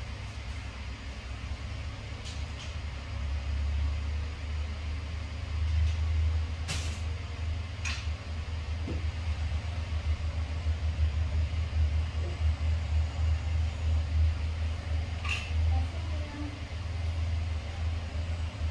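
Helicopter running on the pad with its main rotor turning: a steady low pulsing rotor and engine sound, with a few short sharp clicks about seven, eight and fifteen seconds in.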